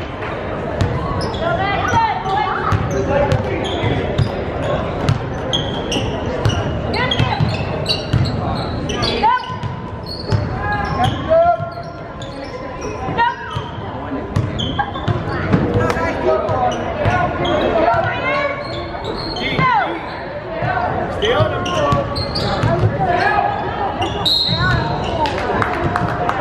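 Basketball game play in a gym: the ball bouncing on the hardwood floor amid players' and spectators' shouts and chatter, all echoing in the hall. A referee's whistle sounds near the end as a foul is called.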